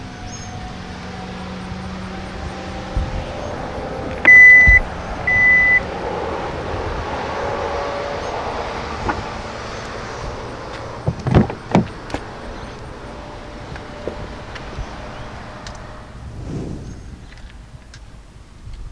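Two short, loud electronic beeps from a 2019 Hyundai Santa Fe about four seconds in, over a steady background hiss. A pair of sharp clunks follows about eleven seconds in, as a car door is opened.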